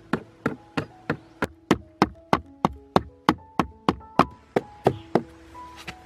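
Steady hammering: sharp knocks of a hand tool striking, about three a second, stopping about a second before the end. Background music with held notes plays underneath.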